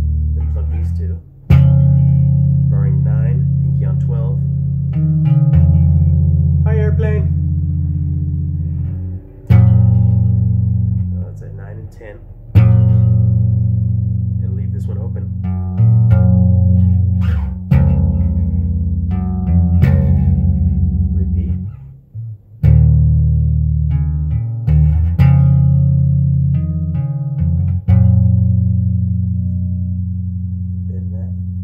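Electric bass guitar played alone: two-note chords, plucked with sharp attacks, each ringing for two to five seconds. Some held notes shimmer with a fast finger tremolo.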